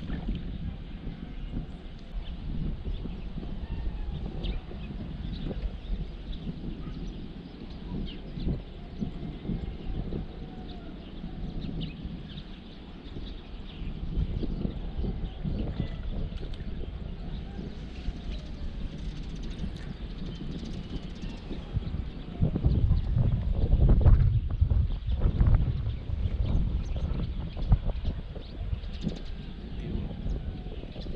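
Wind buffeting the microphone outdoors: an uneven low rumble with scattered knocks, swelling to its loudest with some sharper noises about three-quarters of the way through.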